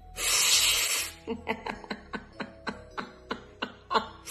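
About a second of hissing breath blown out hard, then a woman laughing in a run of short repeated "ha" bursts, about three or four a second.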